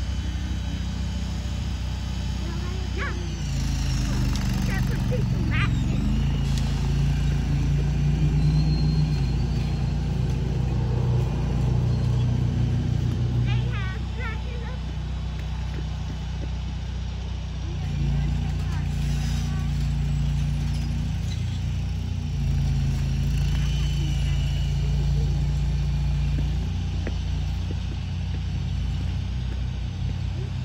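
A vehicle engine runs steadily while moving a portable building. It grows louder and pulls harder twice: once for about ten seconds from a few seconds in, and again for several seconds from just past the middle.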